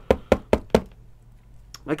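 Thick clear plastic card holder knocking, four quick sharp knocks about a fifth of a second apart in the first second.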